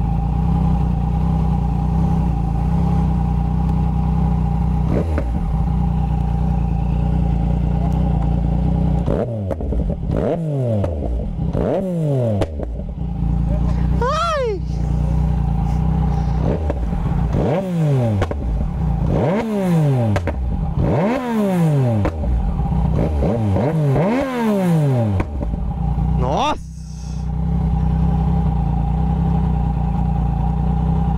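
Yamaha MT-09's inline three-cylinder engine, fitted with a full exhaust, idling steadily. About nine seconds in it is revved in a string of sharp throttle blips, each climbing quickly and falling back. It settles back to idle near the end.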